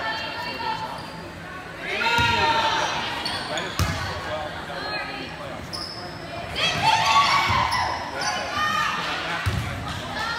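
A volleyball being played in a rally in a reverberant gym: a sharp hit on the ball about four seconds in and a duller thud near the end, amid shouted calls from voices in the hall.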